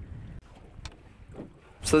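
Wind rumbling on the microphone aboard a small boat on open water, dropping quieter about half a second in, with a faint click about a second in; a man's voice starts speaking right at the end.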